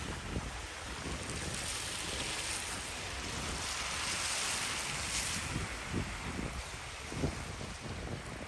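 Wind during a snowstorm, gusting across the phone microphone: a steady hiss that swells about halfway through, with low buffeting thumps, the sharpest near the end.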